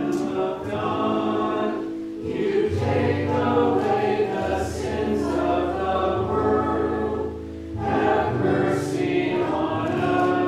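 Group of voices singing church music over sustained low accompaniment chords. The singing dips briefly between phrases about two seconds in and again near eight seconds.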